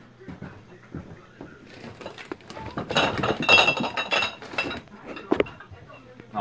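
Glass bottles clinking and rattling against each other as they are handled, busiest around the middle, with one sharp clink near the end.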